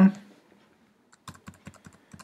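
A quick run of about eight light clicks from computer input while a web page is scrolled down. The clicks start about a second in and come roughly ten a second.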